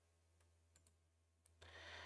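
Near silence, broken by a few faint computer-mouse clicks as the slide is advanced.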